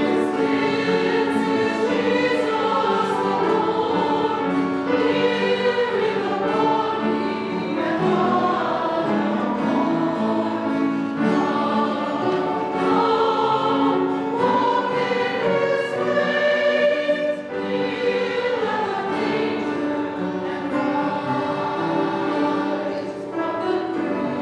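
Mixed choir of men and women singing a hymn in several parts, with a soft guitar and piano accompaniment under the voices.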